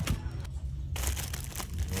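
Thin plastic bags of toy figures crinkling and rustling as they are handled on a pegboard hook, with a sharp click at the start.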